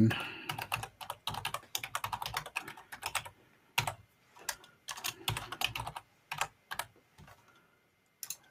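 Typing on a computer keyboard: quick runs of keystrokes, with a short pause a little past three seconds in, dying away about seven seconds in.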